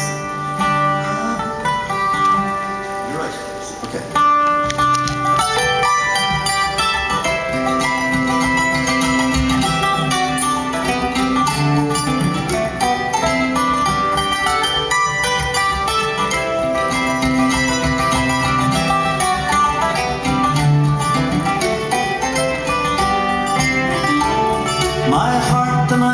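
Instrumental folk introduction: a fiddle plays the melody in long held notes over strummed mandolin and bouzouki accompaniment.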